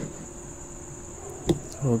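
A steady high-pitched electronic whine in the recording's background, with one sharp click about one and a half seconds in and a voice starting just at the end.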